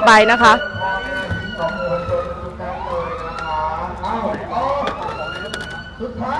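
Ambulance siren wailing in slow sweeps that rise and fall in pitch, about three cycles.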